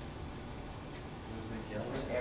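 Faint, indistinct talking over a steady low room hum, with a voice coming through more clearly near the end.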